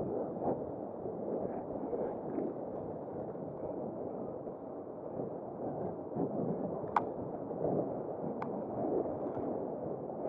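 Wind rushing over the microphone and tyre noise on tarmac as an e-bike rolls downhill at about 20 km/h, with two sharp clicks in the second half, about a second and a half apart.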